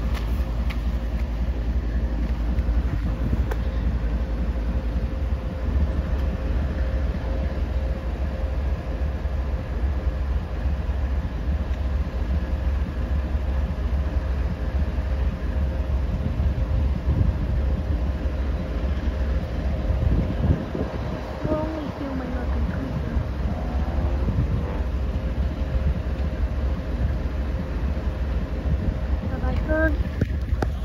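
Steady low rumble of Norfolk Southern diesel locomotives in a rail yard, with a faint steady hum and wind buffeting the microphone.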